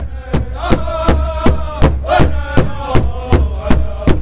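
Powwow drum group beating a large shared hide drum in a steady, even beat of nearly three strokes a second, with the drummers singing together over it.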